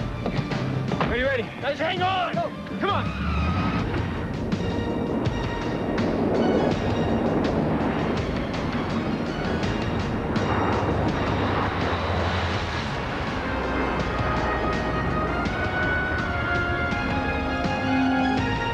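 Film soundtrack: dramatic music mixed with a dense rumbling noise, opening with wavering, bending tones and ending with held musical notes over the rumble.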